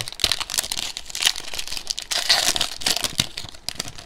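Foil wrapper of a basketball trading-card pack crinkling and crackling in the hands as the pack is torn open. It makes a dense run of crackles that eases off near the end.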